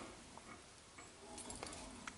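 Faint, sparse ticks and clicks from a car jack being cranked down with its rod handle, lowering the car.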